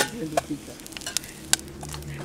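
Spoons clicking and scraping against metal cooking pots and pans as food is stirred over a wood fire: a handful of sharp, separate clicks over a faint hiss.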